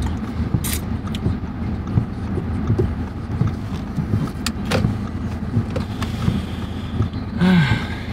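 Car cabin noise while driving: a steady low rumble of engine and tyres heard from inside the car, with a few light clicks and a short swish near the end.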